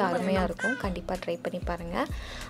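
A high-pitched voice with pitch gliding up and down, loudest in the first second.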